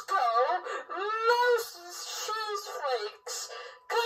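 A very high-pitched, squeaky voice, talking in drawn-out phrases whose pitch slides up and down, with no words that can be made out.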